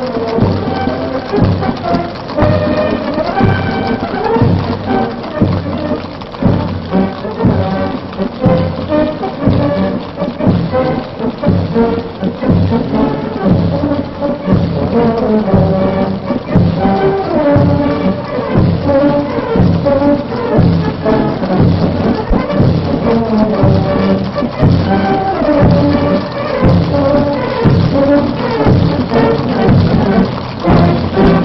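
Military brass band playing a march, tubas and horns over a steady beat, on an old, dull-toned recording.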